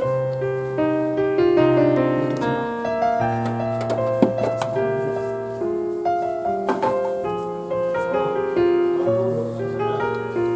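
Background piano music, a steady run of notes, with a sharp click about four seconds in and another a little before seven seconds.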